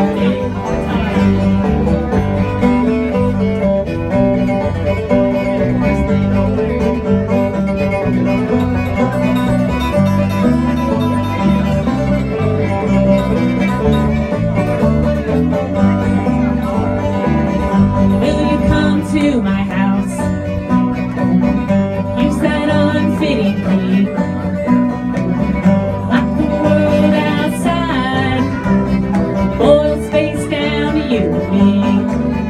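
Live bluegrass band playing an instrumental passage: banjo, acoustic guitar, fiddle and bass, over a steady, even bass rhythm.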